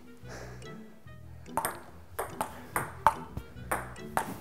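Table tennis rally: the ball clicking sharply off the paddles and table, starting about a second and a half in and going at roughly three hits a second.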